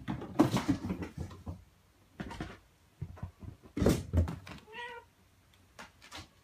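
Scuffling and several dull thumps as a mother cat holds down and grooms a kitten on a tatami mat, then one short cat meow near the end.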